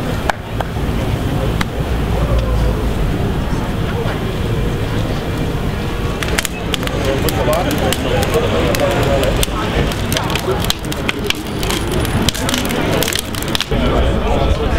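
Wood fire burning in a steel oil drum, crackling, with a run of many sharp pops through the second half.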